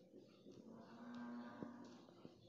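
Near silence, with a faint, held pitched call lasting about a second in the middle.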